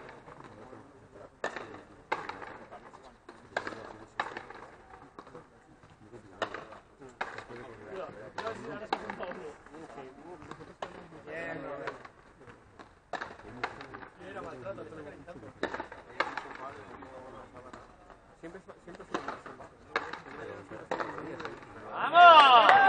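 Frontenis rally: a rubber ball is struck by strung rackets and smacks off the concrete front wall, giving sharp cracks every second or so. Voices talk in the background.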